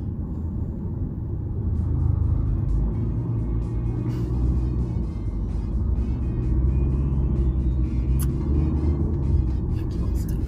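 Steady low rumble of a car driving, heard from inside the cabin, with music playing over it with a steady beat.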